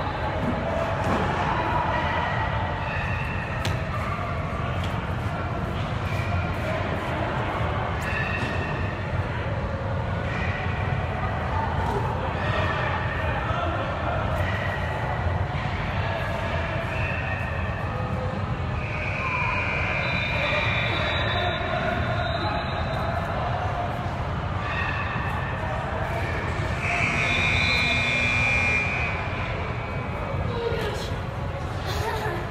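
Loud, echoing background din of a large indoor sports hall: many voices talking at once, with scattered knocks such as balls bouncing.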